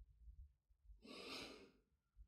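Near silence, with one soft exhaled breath about a second in, lasting about half a second.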